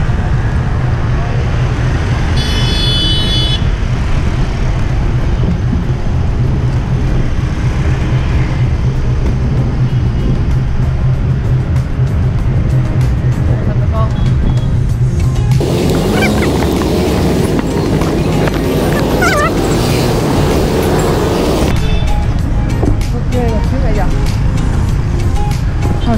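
Steady street traffic noise with a deep rumble. A little past halfway, about six seconds of louder music with voices start and stop abruptly.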